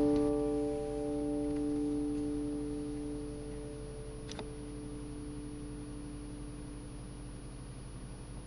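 A guitar chord ringing out and fading away over about three seconds, leaving the low hiss and hum of a home recording, with a faint click about four seconds in.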